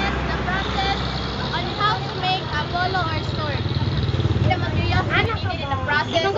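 Indistinct voices talking over the low, steady rumble of a vehicle engine on the road.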